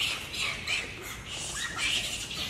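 High-pitched animal chirping: short squeaky calls repeating several times a second.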